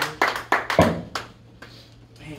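Hand clapping, about four claps a second in an even rhythm, that stops a little over a second in, over a low steady hum.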